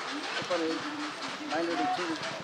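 A man speaking Telugu in short phrases, with brief pauses and light outdoor background noise.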